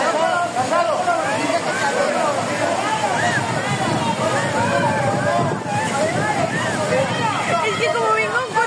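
Several people shouting and calling over one another, over the steady noise of flowing floodwater.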